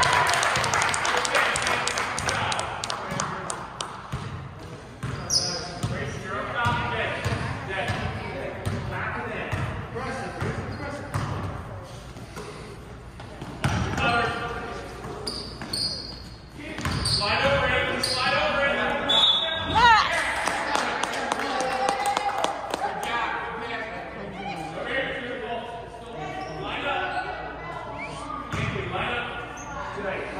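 Basketball bouncing on a gym floor during play, with voices of players and spectators echoing through the large hall.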